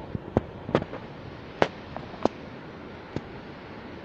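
Footsteps on a steel mesh walkway: about seven sharp, irregularly spaced knocks over a steady background hiss.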